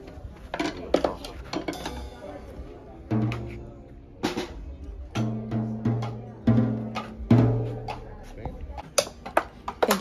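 A drum kit hit by a child in uneven single strokes and short clusters, with pauses between. Several of the hits are low drum tones that ring on for up to a second.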